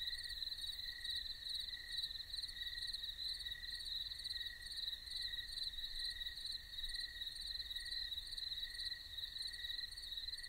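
Crickets chirping: a steady high trill, with a lower chirp repeating about every two-thirds of a second.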